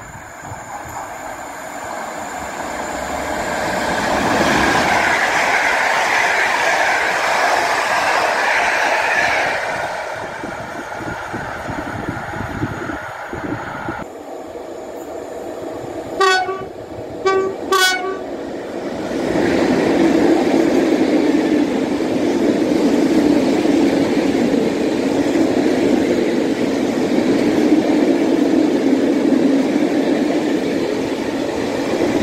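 An EP08 electric locomotive-hauled train passing at speed, its noise swelling and fading over the first ten seconds. About halfway through, a PKP ET22 electric freight locomotive sounds two short horn blasts, then its long train of open freight wagons rolls past with a steady rumble.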